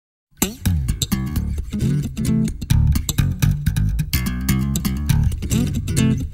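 An electric bass guitar riff playing with sliding notes in an instrumental track, backed by sharp percussive hits. It starts about a third of a second in.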